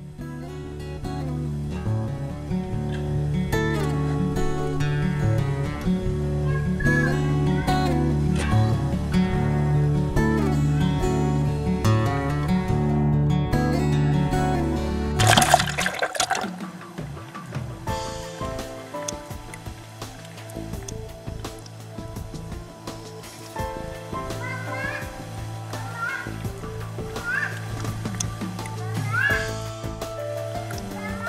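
Background music with a steady beat, then, about halfway through, a loud splash as a clothed child plunges into a swimming pool, followed by quieter water and bubbling sounds.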